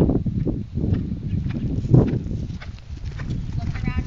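Hoofbeats of a ridden horse on grass, thudding unevenly as it moves past close by.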